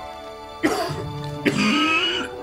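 A man coughing hard into his fist: a sudden fit about half a second in, and a second one about a second later, over soft background music.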